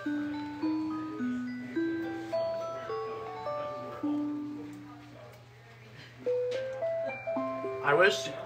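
Musical motion wall clock playing its electronic chime melody, one clear note at a time at about two notes a second, as its animated show runs. The tune fades about five seconds in, then picks up again with a run of rising notes near the end.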